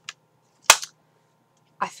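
A single sharp snap about two-thirds of a second in, short and crisp, with faint steady background hum around it.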